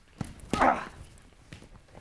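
A light knock, then about half a second in a short wordless cry from a person, like an effort grunt.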